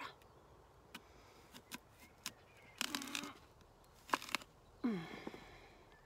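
Knife cutting an apple in half on a wooden cutting board: scattered light clicks and knocks of the blade, with a short crunchy burst about three seconds in as it goes through the fruit.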